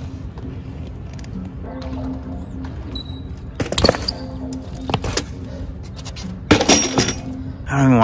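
Background music with repeating held notes, broken by a few sharp knocks and clatter from a BMX bike on concrete, around the middle and again later on.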